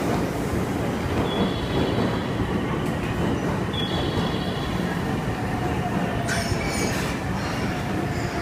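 Electric passenger train rumbling along a station platform, with two brief high-pitched wheel squeals in the first half and a faint falling tone near the end.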